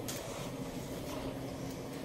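Steady low machine hum with no distinct clicks or knocks.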